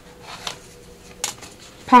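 A metal paperclip and paper being handled by hand: soft rustling with two small metallic clicks, the sharper one about a second and a quarter in.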